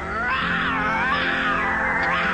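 Cartoon lion cub roaring, a wavering cry that rises and falls in pitch, over a film score.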